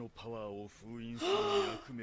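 Speech: a deep man's voice delivering a dramatic line of dialogue from the anime, breathy in places, with a gasp.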